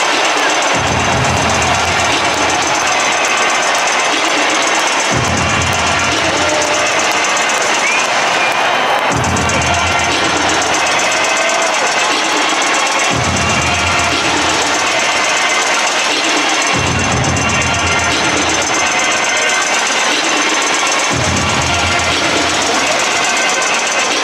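Stadium crowd noise mixed with loud public-address music during pregame team introductions. A deep rumble cuts in sharply about every four seconds and then fades.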